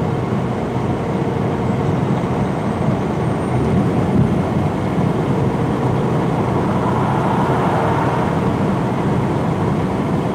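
Steady cab noise of a semi-truck cruising at highway speed: the diesel engine's low drone mixed with tyre and wind noise, with no change in pace.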